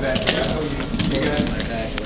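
Quad roller skates rolling and clacking on a wooden rink floor, with many short sharp knocks from wheels and toe stops as several skaters step through a routine, under voices.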